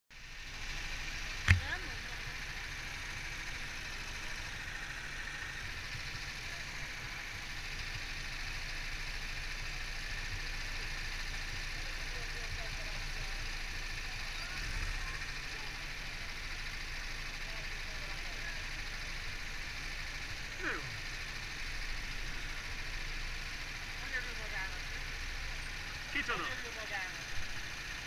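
Go-kart engines running steadily at idle while the karts wait in a queue, with one sharp knock about a second and a half in and faint voices near the end.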